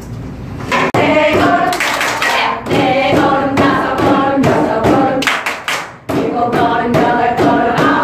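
A group of women singing a simple song together in unison, with a few hand claps. The singing breaks off briefly twice, about a second in and again near six seconds.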